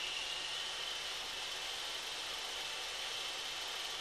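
Circular saw in a Triton Workcentre running steadily, an even hiss with no sharp cutting whine.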